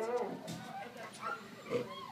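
Faint kennel background: scattered dog vocalisations and a faint voice, with no loud event.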